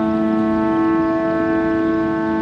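Set of kite flutes on a flying Vietnamese flute kite, sounding a steady droning chord of several held pitches in the wind, one higher tone wavering slightly. A low rumble of wind noise lies underneath.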